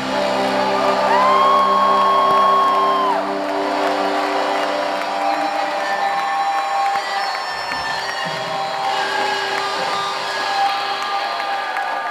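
A rock band's last sustained notes ringing out as a live song ends, with a crowd cheering and whooping. A long high whistle sounds about a second in and holds for about two seconds.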